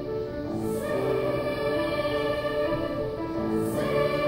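A girls' choir singing, holding long notes that step from pitch to pitch, with two brief high hisses of sung 's' sounds, one about a second in and one near the end.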